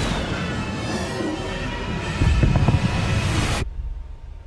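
Film trailer soundtrack: music over dense action sound effects, with a deep low rumble that grows heavier about two seconds in. It cuts off abruptly near the end.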